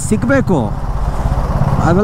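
Motorcycle engine running steadily while the bike rides, an even low pulsing rumble under the rider's talk, which fills the first half-second and returns near the end.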